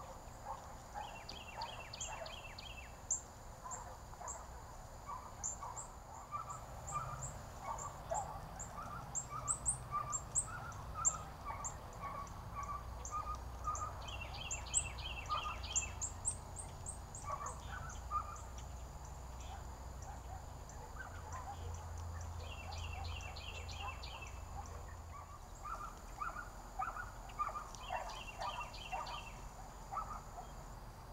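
Several wild birds singing and calling at once: thin high chirps throughout, lower call notes in between, and a short fast trill that comes back four times.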